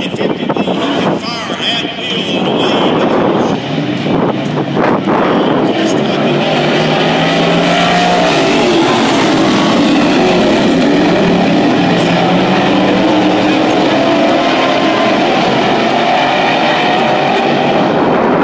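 A pack of dirt-track sportsman race cars running at full throttle. The engines get louder about five seconds in as the field comes past and stay loud, their pitch rising and falling as the drivers get on and off the throttle through the turns.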